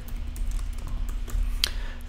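Computer keyboard keystrokes as a phrase is typed into a text box: a run of light key clicks, one sharper click near the end, over a faint steady hum.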